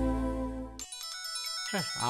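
A music sting with a deep bass chord ends about a second in. A mobile phone ringtone then starts, a melody of bright electronic tones.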